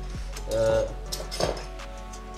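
Rustling and clicking of packaging as a small item is pulled out of a cardboard box, with a few short sharp clicks in the middle.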